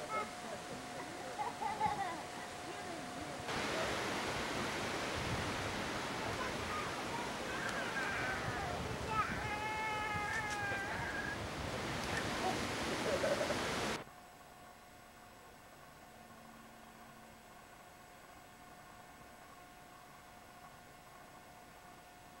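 Outdoor ambience in three edited stretches: faint indistinct voices over a thin steady tone, then a louder even rushing noise, like wind on the microphone, with distant voices. It ends abruptly about two-thirds of the way in, and a quiet stretch with a faint steady tone follows.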